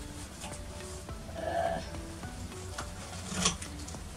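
Grooming brush strokes on a miniature Shetland pony's coat, a scratchy rustling hiss with a sharper scrape about three and a half seconds in, over light background music.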